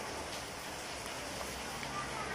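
Steady background hiss with a few faint soft clicks.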